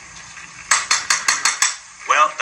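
Farrier's hammer driving horseshoe nails into a horse's hoof: a quick run of about six sharp metallic taps starting under a second in.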